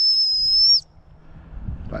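Gundog whistle blown in one long, steady, high-pitched blast that cuts off a little under a second in: the sit whistle, the signal for the spaniel to sit.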